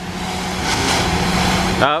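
Steady machine hum with a hiss over it from ship-repair pressure-washing equipment blasting a ship's hull; it cuts off suddenly near the end.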